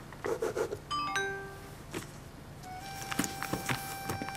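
A short electronic notification chime of a few stepped notes about a second in, like a message alert, followed by soft background music with held notes and a few light clicks.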